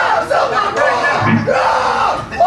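Men yelling and whooping in loud, drawn-out shouts, with no instruments playing.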